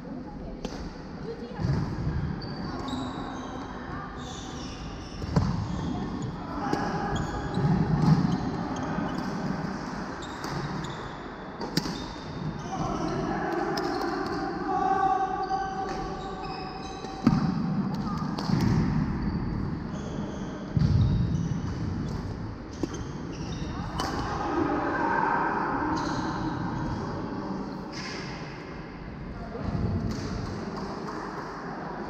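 Badminton play in a large reverberant sports hall: sharp irregular strikes of rackets on shuttlecocks and footfalls on the wooden court floor, with voices in the background.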